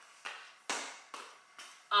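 A child's footsteps on a hard floor: about five knocks roughly half a second apart, the loudest a second in, fading as he walks away.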